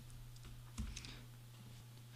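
Faint computer keyboard keystrokes: a few light taps, the clearest just before a second in.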